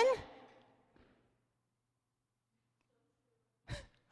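A woman's amplified voice trailing off at the start, then near silence, broken near the end by a short breath as she is about to speak again.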